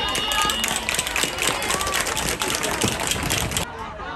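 Many people clapping fast in a dense patter, with shouting voices mixed in, from a football team's sideline and spectators after a play; it cuts off suddenly near the end.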